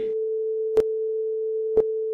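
A steady mid-pitched electronic tone with a sharp click about once a second, twice here: a click track keeping time for a spoken countdown.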